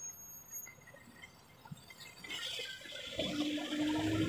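Quiet street ambience, then from about halfway a motor vehicle approaches and grows louder, with a steady low engine hum under road noise.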